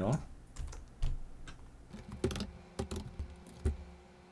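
A handful of irregular clicks and taps from computer input at a desk, about five or six, spaced unevenly.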